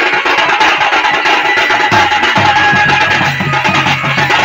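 Live folk music: a large barrel drum (dhol) beaten with a stick, with other percussion and instruments playing steadily. Deep drum strokes come in about halfway through, about three or four a second.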